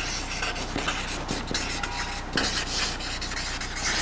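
Felt-tip marker scratching across a large paper pad in many short strokes as words are written, over a steady low hum.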